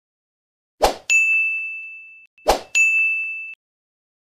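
Subscribe-button sound effect played twice: each time a short click-like hit followed by a bright bell ding that rings and fades over about a second.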